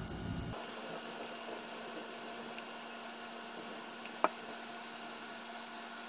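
Faint steady electrical hum with a few light clicks and taps from handling while hot glue is laid on a PVC end cap. The sharpest single click comes a little past four seconds in.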